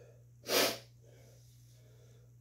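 A person's single short, sharp, forceful burst of breath, sneeze-like, about half a second in, amid heavy breathing.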